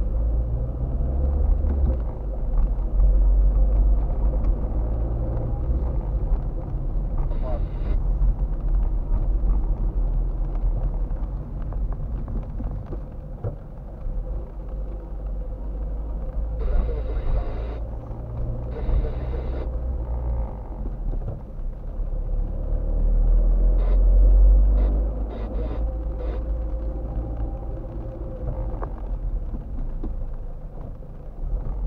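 A car being driven, heard from inside the cabin: a steady low rumble of engine and road noise, swelling loudest about three-quarters of the way through.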